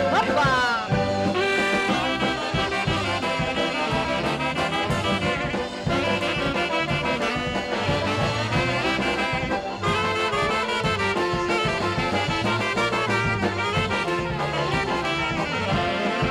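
Polka band playing an instrumental break: brass with saxophone and accordion over a steady bass beat.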